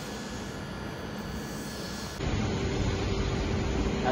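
Steady rumble of railway station background noise on an open platform. It steps up abruptly about two seconds in, louder and heavier in the low end, with a faint steady hum.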